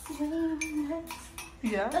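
Steel kitchen utensils clinking as a small container and spoon are handled over a saucepan on a gas stove, with a steady low humming tone in the first half and a woman's voice briefly near the end.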